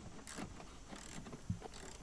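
Faint clicking and ticking of a hand ratchet and socket backing out the window regulator's mounting bolts inside a pickup's door, with one sharper click about one and a half seconds in.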